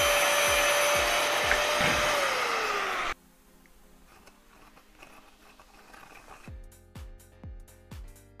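Angle grinder cutting into a steel gas cartridge: a steady high whine over harsh grinding noise. About two seconds in the whine sags lower in pitch, and the sound cuts off abruptly a little after three seconds. Quiet background music with a beat follows near the end.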